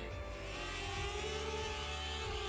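Connex Falcore HD FPV racing quadcopter's motors and propellers whirring in flight, the whine rising and then falling back in pitch as the throttle changes.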